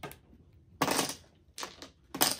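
Mahjong tiles clacking as they are set down and discarded on the table. There is a click at the start, a louder clatter about a second in, and two lighter clacks near the end.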